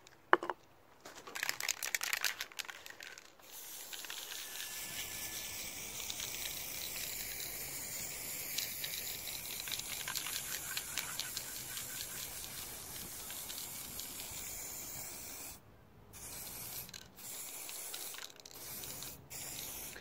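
Aerosol spray paint can spraying onto chicken wire: a few short clicks at the start, then one long steady hiss of spray lasting about twelve seconds, followed by several shorter bursts with brief pauses near the end.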